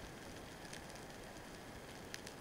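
Underwater ambience picked up by a camera in a waterproof housing: a steady faint hiss with scattered faint clicks and crackles.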